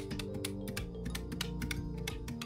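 Quick, clicky key presses on a desk calculator with round keys, several a second, as a sum is entered. Soft background music runs underneath.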